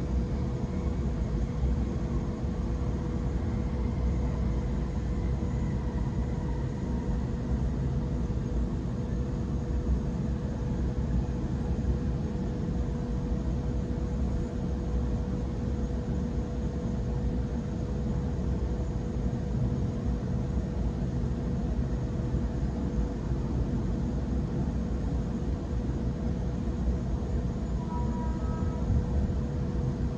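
Interior running noise of a Sydney Trains Waratah double-deck electric train at speed: a steady low rumble of wheels on track with a constant hum, and a brief higher tone near the end.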